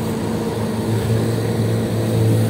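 A vehicle engine droning steadily with a low hum that swells a little about a second in, over a steady hiss.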